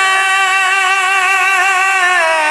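A male naat singer holding one long, steady sung note.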